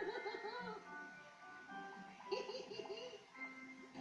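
Light children's-cartoon music from a television, with two short bursts of giggling: one at the start and one a little past halfway.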